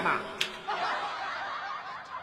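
A woman's soft, breathy chuckle, with a single sharp click about half a second in.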